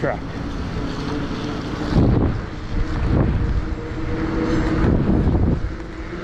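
Wind buffeting the microphone of a moving fat-tire e-bike, with its tires hissing over wet pavement. A faint steady hum runs underneath, and the wind gusts louder about two, three and five seconds in.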